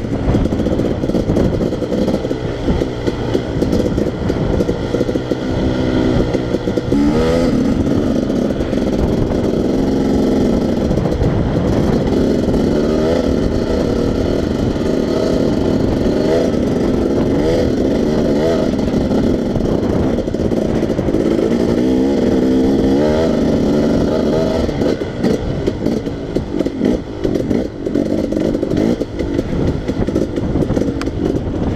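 Dirt bike engine running as it is ridden along a trail, its pitch rising and falling again and again as the throttle is opened and closed, and becoming choppier near the end.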